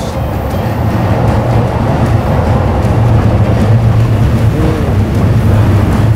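Train running past on the elevated railway close by: a loud, steady low rumble.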